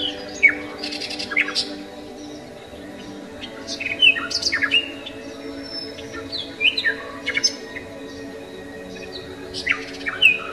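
Bird chirps and tweets in several short clusters of quick falling notes, over a soft, steady musical drone.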